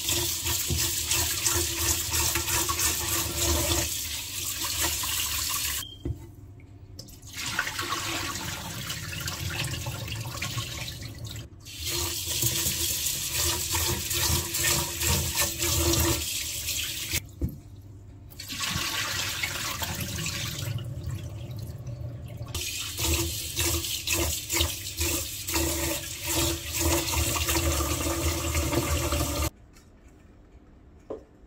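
Tap water running in a steady stream into a pot of rice in a stainless steel sink while the rice is rinsed by hand. The flow breaks off briefly a few times and stops shortly before the end.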